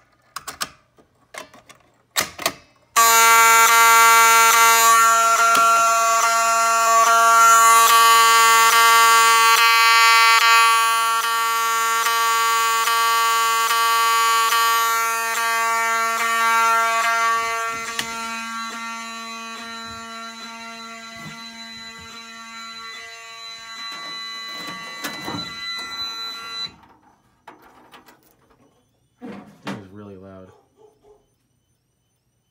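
A few light key clicks, then a fire alarm horn sounding a continuous, steady, buzzy tone: the system is in alarm after the Fire-Lite BG-10LX manual pull station was pulled. The horn grows quieter partway through and then cuts off suddenly near the end.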